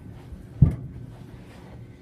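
A single dull thump on a carpeted floor about half a second in, from a body or foot hitting the floor in a play-fight.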